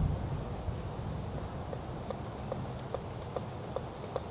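Outdoor ambience: a low steady rumble of wind and distant background, with a short high chirp that starts repeating about one and a half seconds in, roughly two to three times a second.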